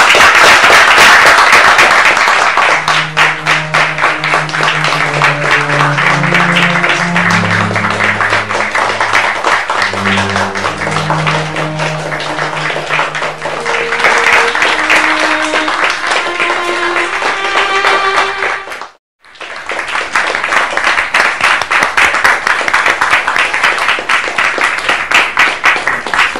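A small group applauding steadily, with background music of slow held notes under the clapping for much of the time. The sound cuts out for an instant about three-quarters of the way through, then the applause carries on.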